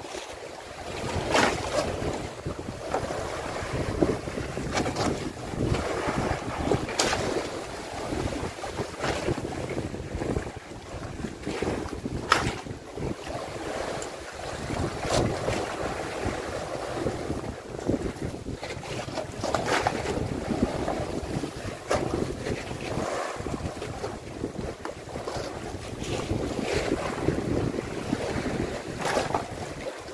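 Wind buffeting the microphone over the wash of sea water around a wooden outrigger fishing boat. Occasional sharp knocks come from fish and plastic basins being handled on the deck.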